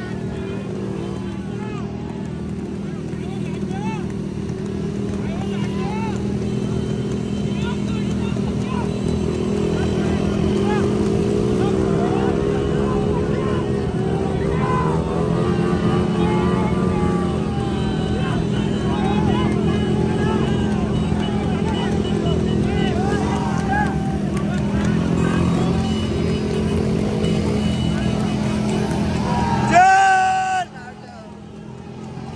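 A pack of motorcycles running together at a steady speed, with men shouting and cheering over the engines; the shouting is thickest in the middle.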